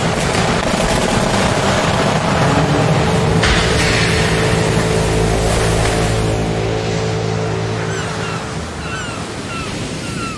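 Storm-at-sea sound effect: a steady rush of wind and breaking waves, brightening about three and a half seconds in, under a low sustained musical chord that comes in about two seconds in and dies away near the end. The storm fades gradually over the last few seconds, with a few short high chirps toward the end.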